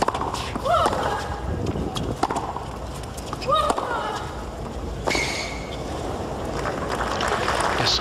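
Tennis rally: racket strikes on the ball every second or so, several followed by a short grunt from the player. After about five seconds the strikes stop and a steadier spread of crowd noise follows.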